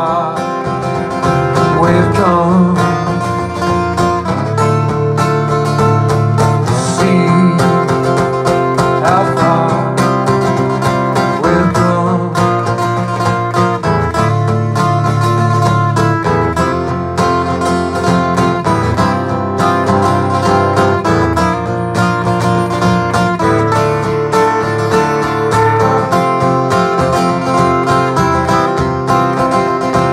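Solo steel-string acoustic guitar strummed in a steady rhythm, ringing chords in an instrumental stretch of a live song.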